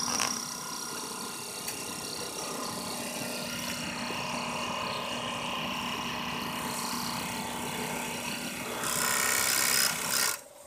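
Hikari HX6814 industrial overlock sewing machine (serger) running at high speed while stitching fabric: a steady mechanical whir over a constant hum, growing louder and brighter in the last second.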